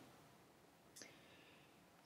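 Near silence: room tone, with one faint tick about a second in.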